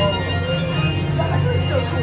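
Steady low rumbling drone inside a dark boat ride's cavern, with faint voices bending in pitch over it.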